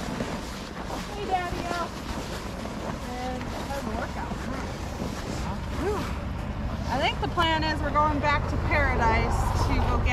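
Indistinct voices talking over a steady low rumble of wind on the microphone; the talk gets louder and busier in the last three seconds.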